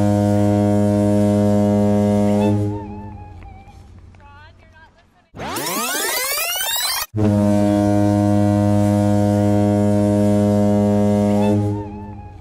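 A low, steady horn-like blast that sounds like a foghorn, held for about two and a half seconds and then dying away. About five seconds in comes a quick rising sweep, and then the same long low blast again for about five seconds.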